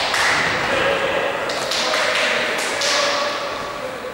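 Indistinct voices of players and onlookers echoing in a large indoor sports hall, rising and falling in several short swells.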